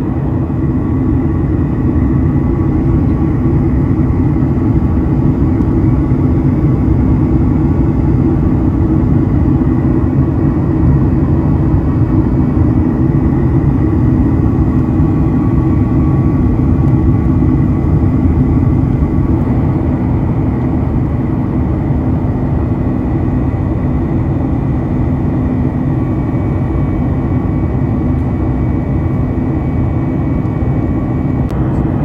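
Airliner cabin noise from a window seat beside the wing: the steady drone of the turbofan engines and airflow in flight, loud and even, with faint steady whine tones over it.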